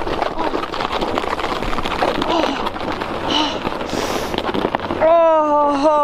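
Cheap plastic sled sliding and scraping fast over snow, a rough crackling noise full of small bumps and knocks. About five seconds in, a rider lets out a long yell that falls in pitch.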